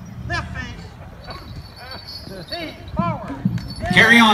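Short, drawn-out calls from a distant voice, rising and falling in pitch, several in quick succession, over a steady low outdoor rumble.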